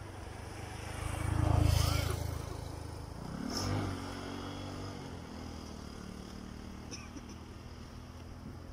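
Motor vehicles passing on the road: the first swells up and is loudest a little under two seconds in, a second engine passes about two seconds later, and a steady engine hum carries on after.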